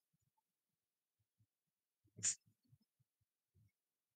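Near silence, broken by one short click a little past halfway.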